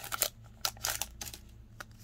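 Handling of a freshly torn-open foil Pokémon booster pack and its cards: a short crinkle of the foil wrapper at the start, then a few faint scattered clicks and rustles.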